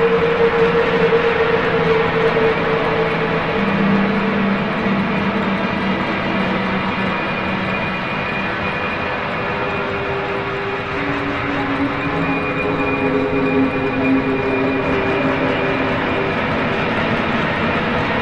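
Eerie ambient background music: a steady wash of sound with long held drone tones that step lower partway through.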